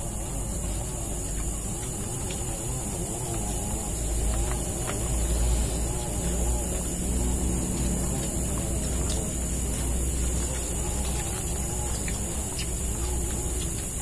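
Forest ambience: a steady high insect drone over a low rumble, with a few faint clicks.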